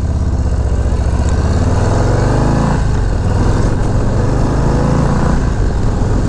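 Harley-Davidson Low Rider ST's Milwaukee-Eight 117 V-twin pulling away and accelerating. The pitch rises, drops at an upshift a little under three seconds in, then climbs again.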